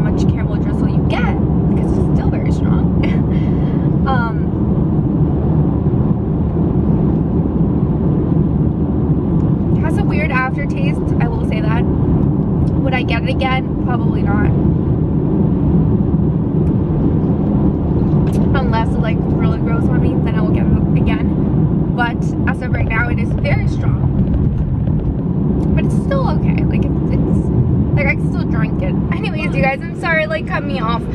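Steady road and engine noise inside a moving Mercedes-Benz car's cabin, with a voice coming and going over it.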